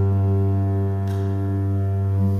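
Double bass bowing one long, low note, held steady without fading.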